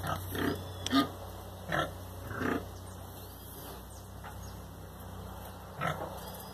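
A sow and her piglets grunting: four short grunts in the first three seconds, then a quieter stretch, and one more grunt just before the end.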